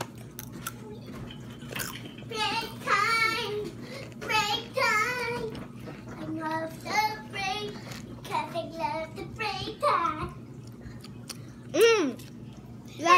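A boy singing wordlessly to himself in about four short, wavering phrases while chewing. In the first two seconds there are a few faint crunching clicks from the rolled tortilla chips (Takis) he is eating.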